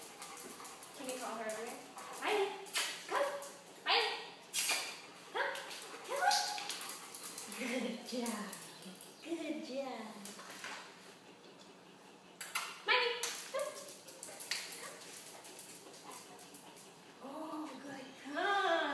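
A dog barking in short bursts, with a lull a little past the middle.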